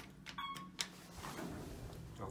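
A short electronic beep, then a sharp click, then the elevator car door starting to slide shut with a soft rubbing noise.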